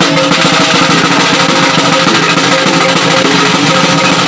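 Maguindanaon kulintang ensemble playing: bossed gongs ring at several pitches over a fast, steady drum beat, with a dense run of strikes and no pause.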